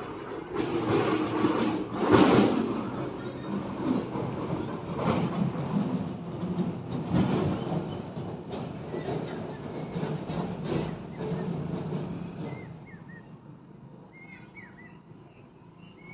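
Steel spatula scraping and stirring thick fried pea paste with onion and masala around a steel kadhai, in repeated rough strokes with a light frying sizzle. The scraping grows quieter after about twelve seconds.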